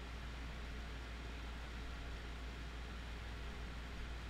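Steady low hiss with a faint constant low hum underneath: the room and microphone background of a voice-over recording, with no other event.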